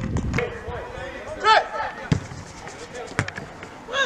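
A brief shout about one and a half seconds in, followed by two sharp knocks about a second apart.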